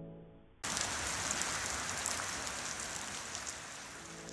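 Steady rain falling on a pool and wet stone paving, cutting in abruptly about half a second in as soft music fades away.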